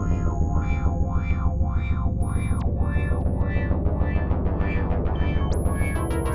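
Experimental electronic synthesizer music: a heavy low drone under a pulsing pattern of pitched notes, about two a second, with thin high tones that start and stop, one jumping up in pitch near the end.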